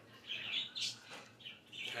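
A bird chirping in several short, separate calls, faint and high-pitched.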